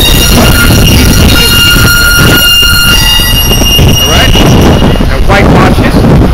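Street vehicle noise: a steady, high squeal of several tones at once, like brakes, lasting about the first three seconds before it stops. Under it is a heavy rumble of wind on the microphone.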